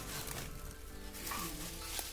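Crackling rustle of dry leaf litter and twigs being disturbed close to the microphone, a continuous crackle with small sharp snaps.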